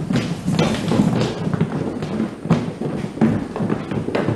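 Footsteps and shuffling thuds of several men walking off together, with background music under them.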